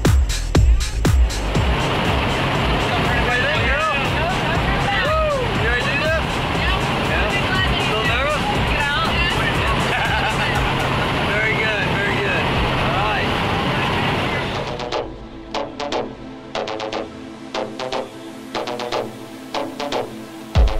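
Electronic music with a steady beat gives way after about a second to the steady engine and cabin noise of a propeller jump plane, with voices calling out over it. About fifteen seconds in, this cuts off sharply and the electronic music returns.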